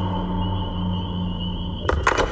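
Dark, suspenseful background music: a low sustained drone under a thin, slightly wavering high tone, with a sudden sharp hit just before the end.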